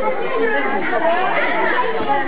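Chatter of several people talking at once, overlapping voices with no single clear speaker.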